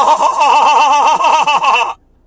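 A man's voice holding one long, loud, high vocal sound whose pitch wavers rapidly up and down, laugh-like or wailing, that stops abruptly near the end.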